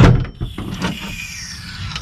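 A sudden loud knock, then a few fainter knocks and clicks over a low rumbling background noise.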